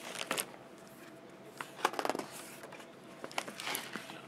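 Pages of a picture book being turned and handled: paper rustling and crinkling in three short bursts, one at the start, one about halfway through and one near the end.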